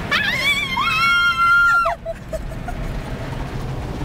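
A woman's high-pitched squeal, rising and then held for about two seconds before dropping off, over the steady rushing and rumbling of an automatic car wash spraying the car.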